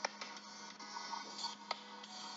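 Faint music playing through a phone's small speaker over a steady low hum, with two light clicks, one at the start and one near the end.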